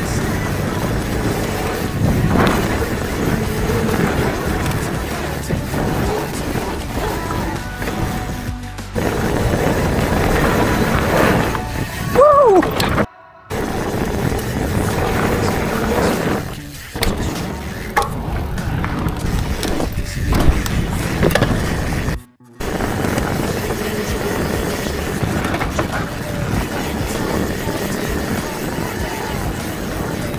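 Mountain bike descending a dirt downhill trail: tyres rolling and skidding on dirt, the bike rattling and knocking over bumps, with wind buffeting the action camera's microphone. A short falling squeal comes a little before halfway, and the sound cuts out for a moment twice.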